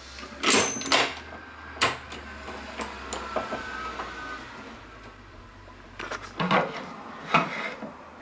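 Clicks and knocks of a miter saw's hold-down clamp being set and a wooden board being handled against the saw's fence, over a low steady hum. The saw blade is not cutting.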